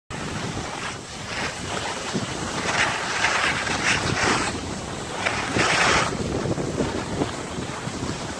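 Wind rushing over the microphone of a moving skier, with skis hissing and scraping over packed snow in several louder swells about 3, 4 and 6 seconds in.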